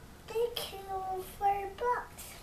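A toddler's high-pitched, sing-song voice: about four drawn-out syllables without clear words.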